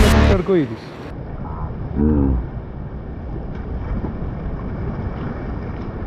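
Steady noise of wind and sea surf washing against shoreline rocks, with a brief voice about two seconds in. Background music cuts off right at the start.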